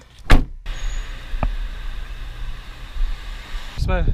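A car door shutting with one sharp, loud thud, followed by a steady background hiss; a voice starts near the end.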